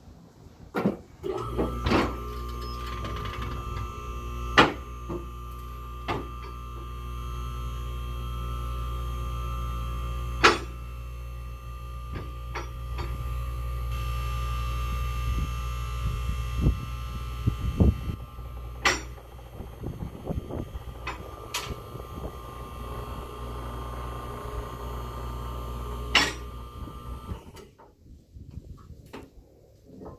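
Bendpak LR-60P low-rise car lift's electric hydraulic power unit running steadily while it raises a car to full height. It starts about a second and a half in and cuts off a few seconds before the end, with several sharp clacks from the lift along the way.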